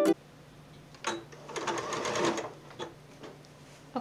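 Sewing machine with a walking foot stitching through the layers of a quilt in one short run of about a second, with a few clicks before and after it, over a faint steady hum.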